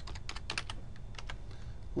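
Typing on a computer keyboard: a quick run of keystroke clicks in the first second, then two more just after a second in.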